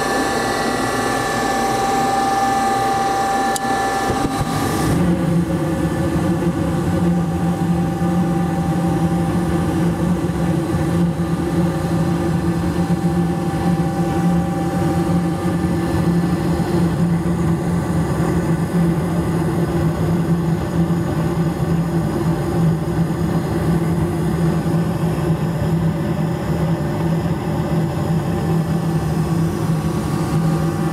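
Gas furnace starting up: a steady motor whine while the igniter glows, then about four and a half seconds in the gas lights and the burners settle into a steady low roar alongside the fan.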